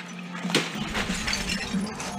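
Dishware being smashed: a sharp crash about half a second in, then shards clattering and clinking.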